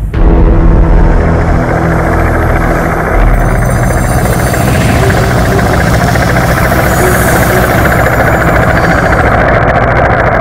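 Helicopter flying, a loud, steady rotor-and-engine sound with no break.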